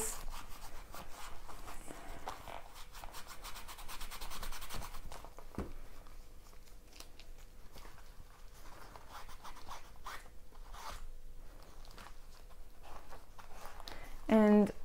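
Acetone-dampened cotton rubbed briskly over a vintage Louis Vuitton wallet's peeling interior lining, dissolving the deteriorated coating. Quick rasping scrub strokes, dense for the first few seconds, then sparser and more scattered.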